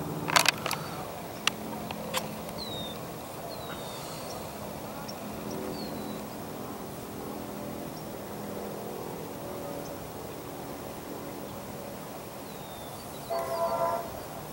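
A train horn sounds once, briefly, near the end, most likely from the approaching Amtrak Capitol Corridor train. Before it there are a few sharp clicks in the first two seconds and a faint, steady background with a few bird chirps.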